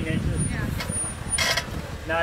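Off-road vehicle engine running at low revs, with indistinct voices over it.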